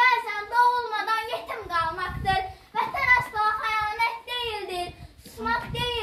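A young girl's voice reciting a poem aloud in a sing-song, chanted delivery, phrase by phrase with short pauses between lines.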